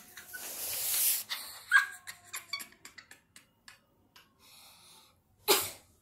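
A child coughing in breathy fits: a long rasping exhale at the start, then two sharp coughs near the end. In between, a run of small clicks and rubbing from the phone held against clothing.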